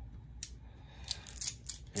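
Small dice clicking against each other and against a hexagonal dice tray as they are rolled: one light click, then a quick cluster of clicks in the second half.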